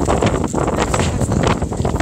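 Strong typhoon gusts buffeting the phone's microphone: a loud, rough, fluttering rumble of wind.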